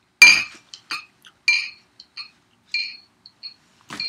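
A sharp clink with a high ringing tone, repeated about every half second or so by an echo delay, with the repeats mostly fading. Another sharp strike comes just at the end.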